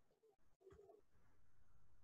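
Near silence: room tone, with a couple of faint, short low sounds in the first second.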